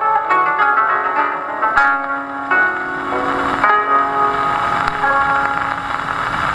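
Koto trio plucking a fast run of notes, played back from a 1928 Victor 78 rpm shellac record on an acoustic Victrola phonograph. The notes grow densest about halfway through.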